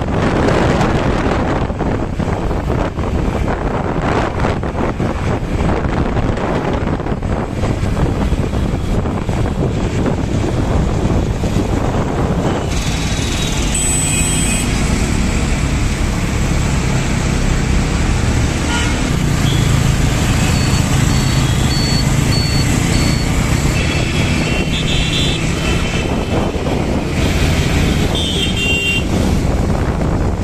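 Wind rushing over the microphone while riding in traffic. About halfway it gives way to road traffic with engines running at a standstill and several short vehicle horn honks.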